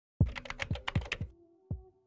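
Computer keyboard typing: a quick run of about eight keystrokes lasting about a second, then a single click shortly after.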